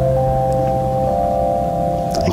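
Soft background music of sustained keyboard chords, several notes held steadily, with a low bass note dropping out about halfway through.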